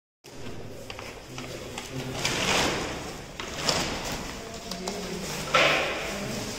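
A few scrapes and rustles of papers and boxes being handled, the loudest near the end, over faint background voices.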